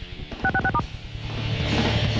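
Four quick touch-tone dialing beeps about half a second in: three identical two-tone blips, then one at a different pitch. They fall in a gap in heavy rock music from a TV station ident, and the music builds back up in the second half.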